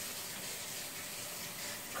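Shower running with the hot water turned on: a steady hiss of flowing water.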